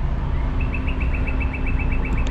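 A bird's rapid trill of even, high chirps, about ten a second, starting about half a second in, over a steady low rumble.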